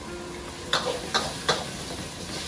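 Metal spatula clanking against a wok of frying rice noodles: three sharp strikes in quick succession, starting under a second in, over a steady sizzle.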